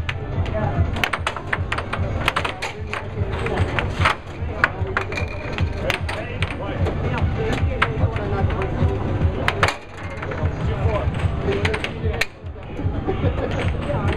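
Air hockey puck rapidly clacking off the players' mallets and the table's rails in fast, irregular sharp hits, over the steady hum of the table's air blower.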